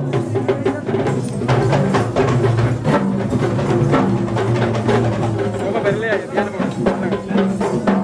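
Traditional Sri Lankan procession drumming: many cylindrical hand drums played together in fast, sharp strokes, over a steady droning tone.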